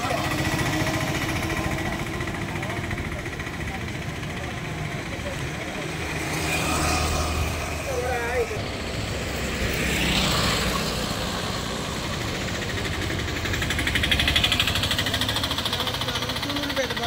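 A vehicle engine running with a steady low rumble, with faint voices talking now and then.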